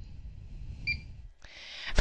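A single short, high beep from the PFC-6000 fire alarm control panel keypad about a second in, the key-press tone as the Enter key is pressed.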